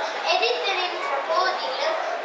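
A young girl reciting aloud into a microphone, her voice rising and falling in continuous phrases.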